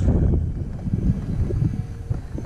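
Low, uneven rumble of wind buffeting the microphone, with no clear tone or rhythm.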